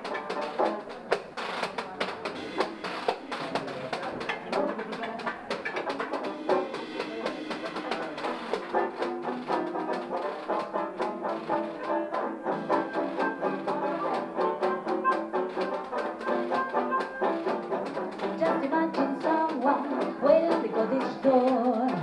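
Live jug band playing an instrumental passage: banjo, hand percussion and a harmonica lead, in a small room.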